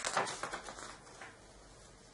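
Faint rustling and handling of a paper booklet's pages, a few soft scrapes and flicks in the first second, then almost nothing.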